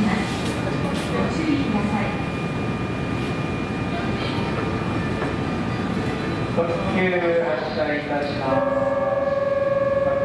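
A Keihan 8000 series electric train running at a station platform, with a station announcement over it. About seven seconds in, a set of steady electronic-sounding tones starts up, holds, and then steps to new pitches.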